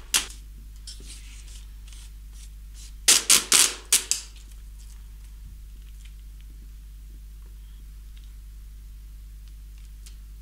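Plastic packaging tape ripped off its roll in a quick run of four or five short rasps about three seconds in, with a low steady room hum the rest of the time.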